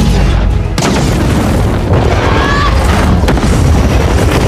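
Film sound effects of a giant rocket thruster firing, a heavy continuous low rumble with booming hits, mixed with loud orchestral score music.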